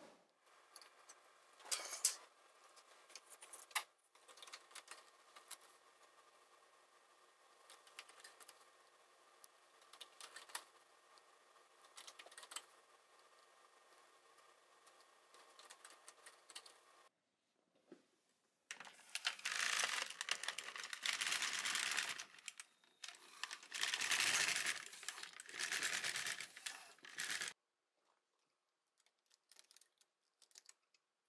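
Plastic needles of an LK150 knitting machine clicking as knitting is hooked onto them by hand with a latch tool: scattered light clicks at first, then two denser stretches of clicking and rattling about two-thirds of the way through.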